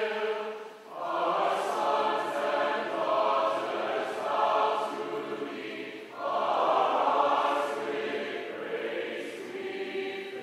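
A choir singing the university alma mater in a new arrangement, phrase by phrase, with brief breaks between phrases about a second in and again about six seconds in.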